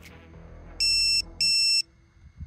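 Vifly GPS Mate's lost-model alarm beeping: two short high-pitched electronic beeps, about half a second apart. The beacon has triggered automatically because the model has sat still for a while.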